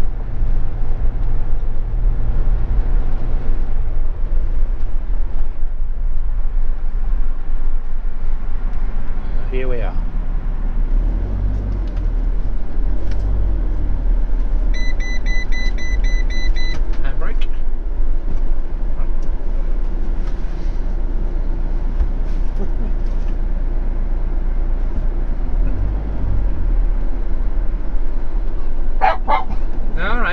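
Motorhome engine and cab noise as it drives slowly, a steady low drone. A short run of rapid electronic beeps sounds about halfway through, and a dog starts barking near the end.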